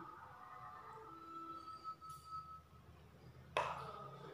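Faint, steady room hum while glaze is spooned over rolls; about three and a half seconds in, a metal spoon clinks once against the ceramic bowl and rings briefly.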